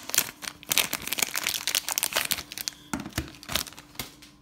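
Plastic card sleeves crinkling and rigid plastic card holders clicking against each other as a stack of trading cards is handled, with two sharper knocks a little after three seconds in.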